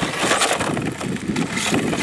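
Electric RC drag car on asphalt with its chassis sitting so low that it drags bottom, the button-head screws grinding on the road and pulling the car into circles. A rough, noisy scraping with a couple of sharper scrapes.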